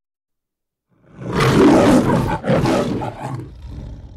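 The MGM lion logo roar: after about a second of silence, two loud roars follow one another, then a weaker growl that fades out.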